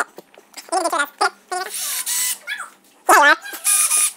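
Cordless drill running in short bursts as it bores holes through a plastic transducer shield: a whining spin about two seconds in and again near the end.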